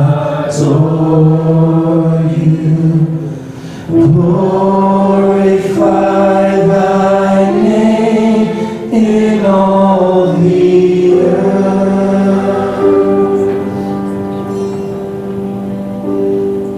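A worship band of piano, electric guitars and drums plays a slow song under sung notes, long and held. The music dips briefly a few seconds in, then swells again.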